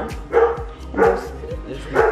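A dog barking a few times in a row somewhere in the store, short barks spaced roughly half a second to a second apart.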